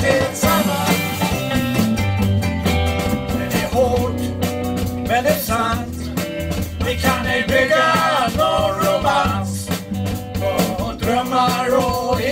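A live band playing: electric guitar, electric bass, mandolin and drums together in one continuous stretch of music.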